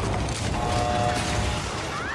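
Film soundtrack sound effects of heavy machinery: loud, dense mechanical clanking and grinding.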